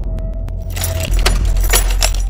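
A bunch of keys hanging from a door lock jangling, starting a little before halfway, over a steady low drone.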